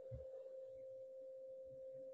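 A faint, steady tone at a single pitch, held without a break.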